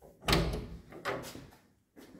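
A lift's hinged landing door being unlatched and pulled open by its knob: a sharp clack about a quarter second in, then a second clatter about a second in, each dying away quickly.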